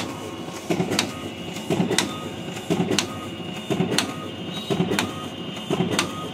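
Ricoh DX 2430 digital duplicator printing wedding cards. It runs in a steady cycle of a sharp click and a rustling sweep about once a second as each card is fed through and dropped into the output tray.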